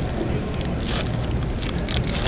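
Foil trading-card pack wrapper crinkling as it is torn open by hand: a few short scratchy crinkles, the loudest about a second in, over a low steady hum.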